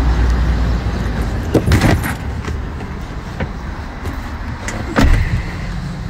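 Steady low hum of an idling van, with a short burst of clicks and clatter about two seconds in as someone climbs in through the sliding side door. About five seconds in there is a single loud, heavy thump, typical of a van door shutting.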